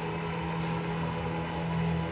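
Background music holding one low note steady, played over a hall's loudspeakers.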